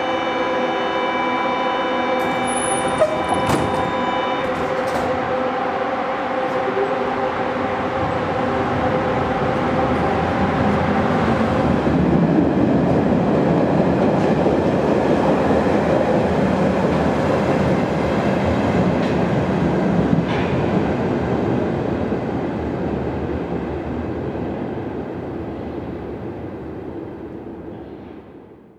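Berlin U-Bahn type D57 'Dora' train: a steady hum with several held tones and a couple of clicks about three seconds in, then the train running on the track, its rumble building to its loudest around the middle and fading away toward the end.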